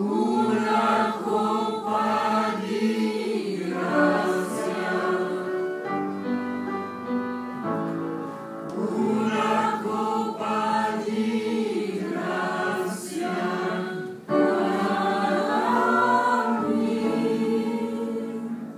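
Choir singing together in long sustained phrases, with a brief drop about fourteen seconds in before the voices come back in loudly.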